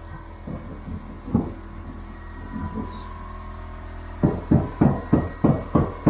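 Low, steady hum for about four seconds, then a quick, even run of knocks, about five a second.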